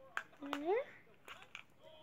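A short spoken word, "there", rising in pitch, with a few light clicks from small plastic pieces being handled in a clear plastic compartment container.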